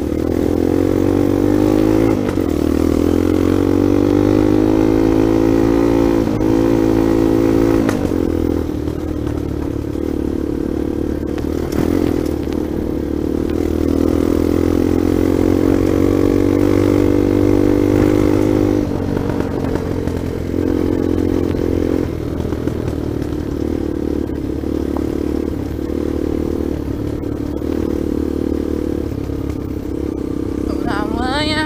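Dirt bike engine under way, its pitch climbing as it accelerates and dropping at several gear changes in the first twenty seconds, then running lower and more unevenly with small throttle dips. A few knocks come from the bike over the rough dirt track.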